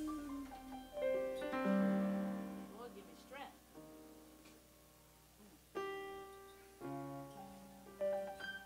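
Piano playing slow, sustained chords that ring and fade away, with a quiet gap in the middle before two more chords are struck.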